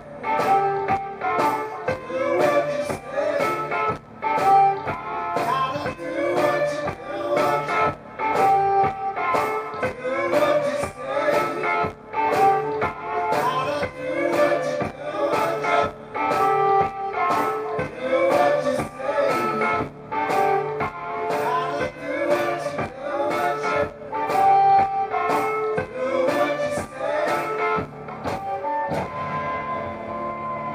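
Live blues band: a harmonica played cupped against a vocal mic, over electric guitar and a steady drum beat. The beat stops about a second before the end, leaving one held note.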